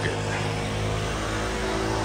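A motor running steadily nearby with a low, even hum that does not change in pitch or loudness.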